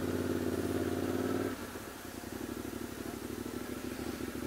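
Motorcycle engine running at low speed, a steady note that drops to a quieter, lower, pulsing note about one and a half seconds in.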